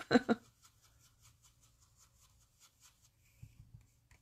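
A blending brush rubbing ink onto cardstock petals with faint, quick, regular brushing strokes, about four a second. The strokes fade out in the last second.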